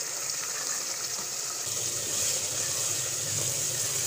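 Watery keema masala sizzling and bubbling in a pot as it is stirred with a wooden spatula, a steady hiss from its liquid cooking off before the mince is roasted. A low rumble joins after about a second and a half.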